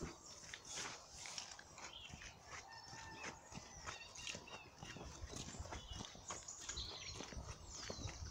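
Faint songbirds calling and chirping in short repeated phrases, with footsteps squelching along a muddy path.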